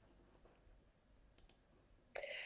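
Near silence: faint room tone, with two faint clicks close together about a second and a half in.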